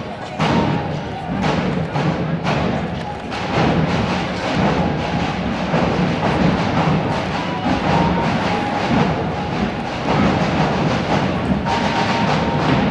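Drums beating a steady processional rhythm, with other music and crowd voices.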